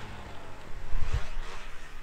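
Snowmobile engine running faint and distant after its note drops away, under wind rumble on the microphone, with a couple of low gusts buffeting the mic about a second in.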